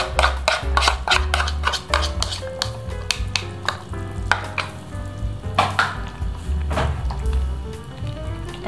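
A utensil stirring soup in a stainless steel saucepan, with scattered light clinks against the metal. A background music track with held notes and a pulsing bass plays under it.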